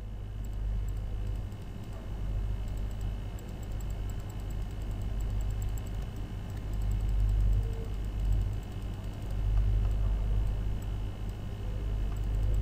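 A low steady hum under faint clicking from a computer mouse and keyboard.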